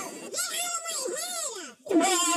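A child's voice wailing without words: a breathy onset, then a wavering pitch that rises and falls in a couple of long arcs before breaking off near the end.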